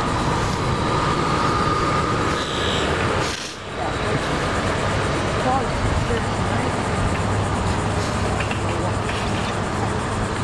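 Steady outdoor noise from a handheld camera walking outdoors: a loud rumble and hiss, heaviest in the low end, typical of wind on the microphone mixed with traffic. It dips briefly about three and a half seconds in.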